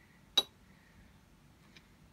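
A single sharp clink from a painting tool knocking against a hard surface about half a second in, then a faint tick near the end, over quiet room tone.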